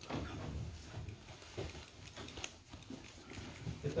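Faint scattered knocks and handling noises, with a low murmur underneath.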